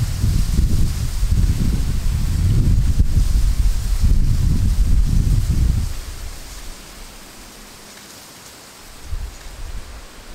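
Wind buffeting the microphone in gusts, a deep rumble that dies down about six seconds in and leaves a faint hiss.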